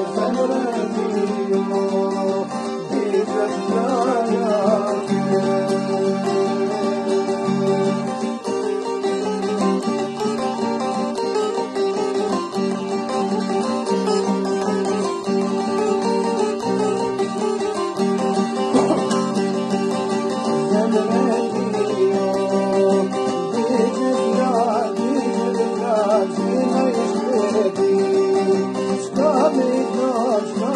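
An Albanian çifteli, a two-string long-necked lute, playing a steady drone note and an ornamented melody over an acoustic guitar accompaniment.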